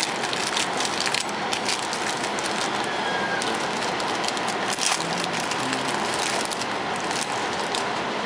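Trading cards and foil booster-pack wrappers being handled on a wooden table: many light clicks and crinkles over a steady hiss of room noise.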